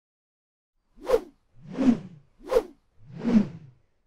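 Four whoosh sound effects in quick succession, starting about a second in, alternating short sharp swishes with longer ones that swell and fade, as for an animated title graphic.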